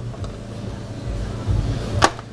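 Low rumble and handling noise from a trim tool working at a plastic Christmas-tree push-pin fastener on a Jeep Wrangler's lower air dam, ending in a sharp click as the fastener pops loose.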